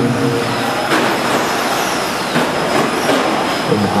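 Radio-controlled off-road cars racing on a dirt track: a dense mix of motor whine and tyre noise, with a few sharp knocks.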